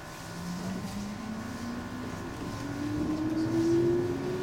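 Electric train's traction motors whining, one tone rising steadily in pitch as the train speeds up, over a low rumble.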